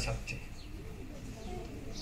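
A bird cooing faintly in a pause between spoken phrases, over a steady low hum.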